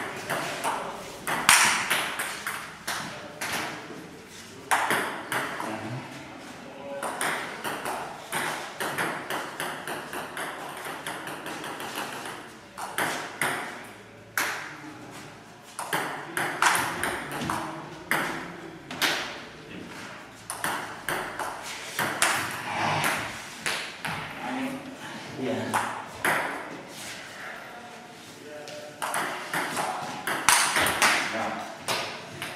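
Voices calling out during a match, with repeated sharp knocks scattered between them.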